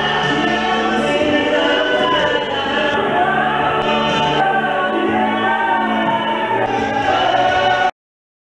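Gospel worship singing: a lead singer sings into a microphone, with several other voices singing along. The sound cuts off abruptly just before the end.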